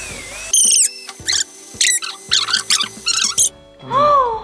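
A run of short, high-pitched squeaky chirps, each falling in pitch and coming in quick irregular bursts, over background music.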